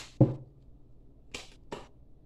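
Tarot cards being shuffled and handled. There is a short tap early on, then two brief, crisp card swishes about a second later.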